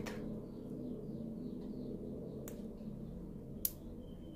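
Quiet steady low hum of the room, with two short sharp clicks from the crochet hook and yarn being worked by hand, a faint one about halfway through and a louder one near the end.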